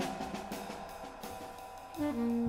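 Free-improvised jazz drumming on a drum kit: irregular, scattered cymbal, hi-hat and snare strokes with no steady beat, mixed with a few short piano notes.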